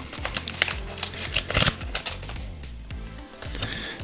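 Crinkling of a torn-open foil booster-pack wrapper and cards sliding against each other in the hand, busiest in the first two seconds, over background music.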